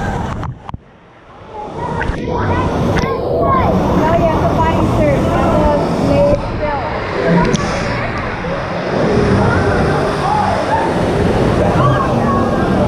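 Water sloshing and splashing against a waterproof action camera held at the surface, going dull and quiet for about a second as it dips under early on, with voices of other swimmers mixed in.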